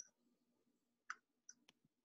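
Near silence on a video-call line, broken by three or four faint short clicks about halfway through.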